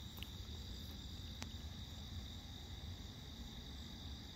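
A faint, steady chorus of night insects such as crickets, a high even trill, with one sharp click about a second and a half in.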